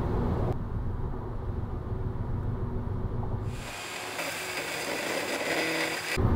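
Car cabin noise while cruising on a freeway: a steady low rumble of tyres and engine. About three and a half seconds in it switches abruptly to a thinner, hissing road-and-wind noise with little rumble.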